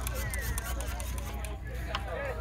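Voices talking in the background over a steady low wind rumble on the microphone.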